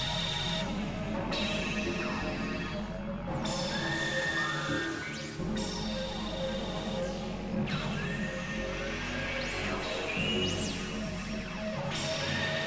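Experimental electronic drone and noise music from synthesizers, several recordings layered together. Steady low drones run under a dense texture, with swooping pitch glides that come back every few seconds.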